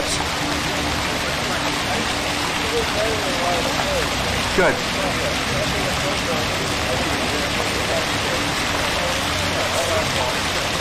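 Ornamental fountain jets arcing into a pool, the water splashing in a steady, even rush.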